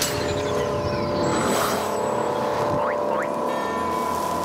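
Music and sound effects of an animated concert intro film: held synthesizer tones under a whoosh about a second and a half in and two quick rising sweeps near the end.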